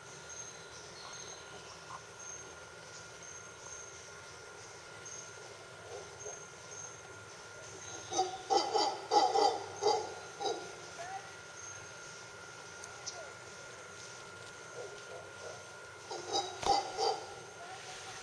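Mantled howler monkeys calling in the treetops: two bouts of loud, rapidly repeated calls, one about halfway through and a shorter one near the end.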